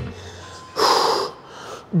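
A single forceful exhale through the mouth, a short breathy puff about halfway through, as a man braces to start a set of dumbbell rows.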